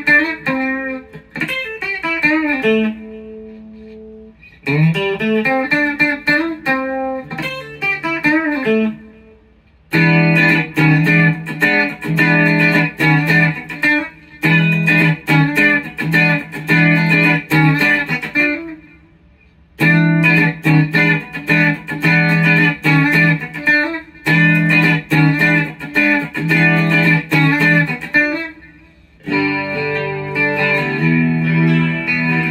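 Single-pickup 1960s Gibson Kalamazoo electric guitar, a copy of the Fender Mustang, played through an amp. It starts with sliding single-note lead phrases and a held note, then from about ten seconds in moves to rhythmic strummed chords in bursts with brief breaks.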